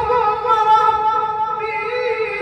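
A high male voice in melodic Quranic recitation (tilawah), sung into a microphone, holding one long note with a fast, even wavering ornament.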